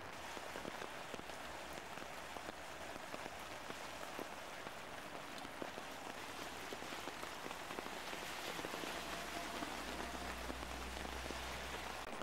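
Rain falling on a flooded street: a steady hiss peppered with small drop ticks, with a low rumble in the last few seconds.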